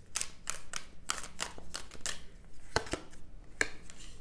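Tarot deck being shuffled by hand: a run of quick, irregular card slaps and flicks, with two sharper clicks in the second half.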